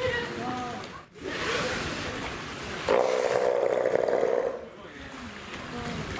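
Steller sea lion giving one loud, harsh, pulsing roar lasting nearly two seconds, starting about three seconds in, with water splashing from swimming sea lions.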